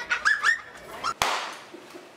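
A high, squeaky voice repeating "yum" a few times, each one sliding up in pitch, which stops about half a second in. A little over a second in comes a sudden rush of hiss that fades away.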